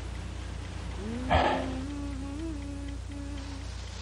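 A man's low, wordless hum: one drawn-out note begins about a second in, slides up at its start with a breathy sound, and is held for over two seconds.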